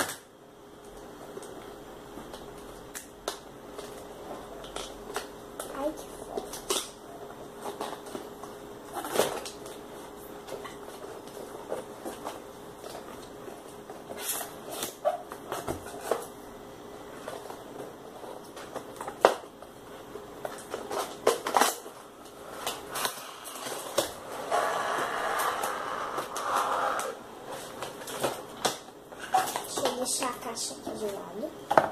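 A cardboard toy-kit box being opened by hand: scattered clicks, taps and scrapes of cardboard and plastic packaging, with a denser stretch of rustling near the end.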